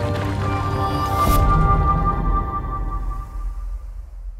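Outro music for a logo end card: held synthesized tones, a brief swish about a second in with a deep low swell under it, then fading out near the end.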